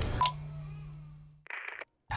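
Electronic sound effects: a click, then a steady low hum that cuts off suddenly, and near the end a brief burst of rapid electronic beeps.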